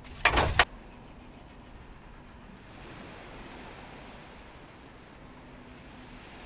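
Sun loungers clattering as one is set down on a stack, a short rattling knock just after the start. Then a steady soft hiss of open-air background noise.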